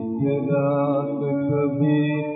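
Old 1940s Hindi film song recording, with long held sung notes over accompaniment; the sound is muffled and lacks treble, as in an old record transfer.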